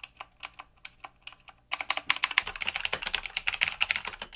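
Mechanical keyboard with clicky blue switches: a few separate key presses clicking, then from a bit under two seconds in a fast, continuous run of typing.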